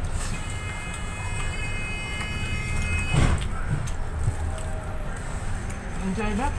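Double-decker bus running, with a steady low engine and road rumble, a steady high-pitched squeal lasting about three seconds, then a short sharp hiss of air about three seconds in, as of the bus's brakes.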